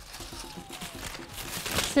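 Paper-chain decorations crinkling and rustling as they are gathered up by hand, growing louder towards the end.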